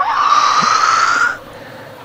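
A shrill, hissing screech about a second and a half long, its pitch rising slightly before it breaks off.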